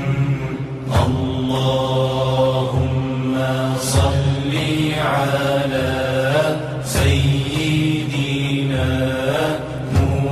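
Chanted Arabic salawat (blessings on the Prophet Muhammad): a voice drawing out long held, wavering notes over a steady low drone, with a sharp beat about every three seconds.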